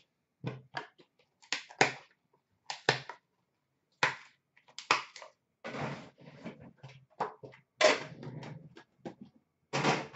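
Hands handling a small trading-card box and its cards on a glass counter: a string of irregular clicks and knocks with short sliding rustles as the box is opened, the cards are slid out and things are set down.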